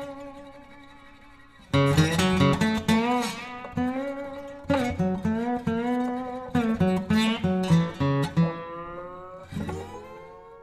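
Background music: acoustic guitar playing plucked, ringing notes, falling away near the start and coming back in after about a second and a half.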